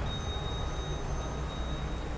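An Otis elevator's high, bell-like chime rings once and fades over about two seconds, over a steady low machinery hum, as a car arrives before its doors open.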